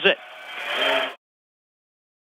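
The announcer's last word, then about a second of stadium crowd noise swelling after a fumble recovery, before the sound cuts off suddenly.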